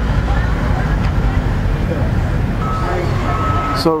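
Steady, loud, low rumbling outdoor background noise. A faint steady whine is heard twice in the last second or so.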